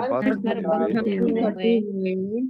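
Speech only: one voice reading aloud in Hindi, slow and drawn out.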